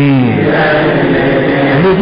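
A Burmese monk's voice drawing out one long syllable in a chant-like recitation of Pali grammar, the pitch held nearly level.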